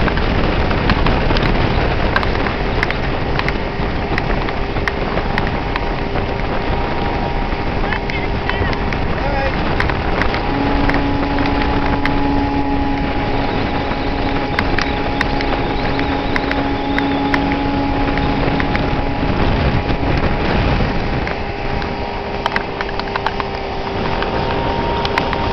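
125 hp Mercury outboard motor running steadily at high throttle while towing, mixed with the rush of the wake and wind on the microphone. A lower steady hum joins about ten seconds in and drops out about ten seconds later.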